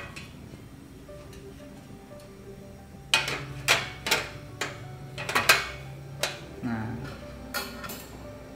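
Stainless steel sheet-metal parts of a portable gas grill stove clinking and clanking as they are lifted and seated in place: a run of sharp metal clinks beginning about three seconds in, over quiet background music.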